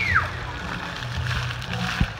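Splash pad fountain jets spraying and splattering onto wet paving, with music playing underneath. A child's high-pitched squeal trails off just as it begins.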